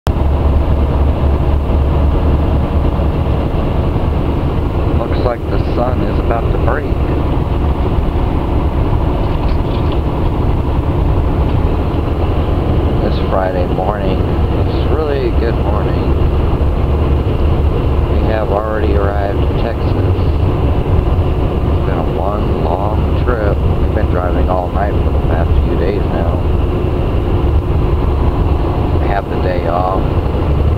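Semi-truck cab interior at highway speed: a steady low drone of engine and road noise, with indistinct voices breaking in several times.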